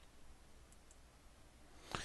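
Near silence: room tone, with two faint clicks close together a little under a second in. They come from a computer mouse clicking to bring up the next presentation slide.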